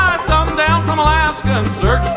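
Live bluegrass band playing: upright bass plucking steady notes on the beat under a sung melody, with banjo, acoustic guitar, mandolin and fiddle.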